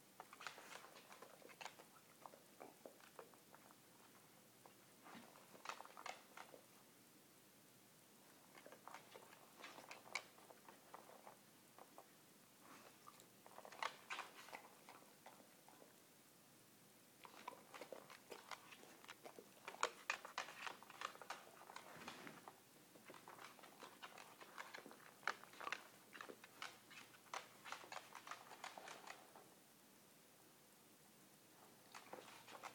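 Faint sound of a dog crunching and chewing small food treats, in about six bouts of a few seconds each with short pauses between.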